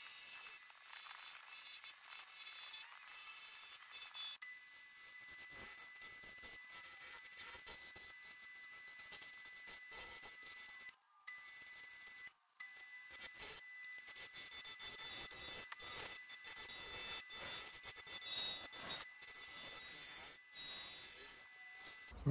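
Faint scraping hiss of a turning tool cutting a spinning ziricote blank on a wood lathe, with scattered light ticks and a thin steady whine from about four seconds in. The sound drops out briefly twice near the middle.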